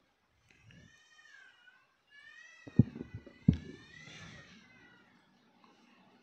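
A microphone on its stand being handled and adjusted: two sharp knocks, with a high wavering whine that rises and falls for a few seconds.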